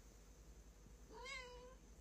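A long-haired black-and-white cat gives one short, faint meow about a second in, rising then falling in pitch, as a hand strokes its back toward its rump: a protest at being touched there.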